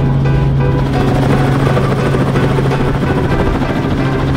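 Helicopter engine and rotor heard from inside the cabin, a loud, steady drone with a low hum, as the helicopter lifts off its landing platform. Background music plays under it.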